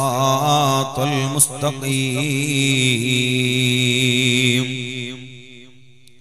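A man's voice chanting one long, drawn-out melodic phrase with wavering pitch through a microphone and loudspeakers, fading out about five seconds in.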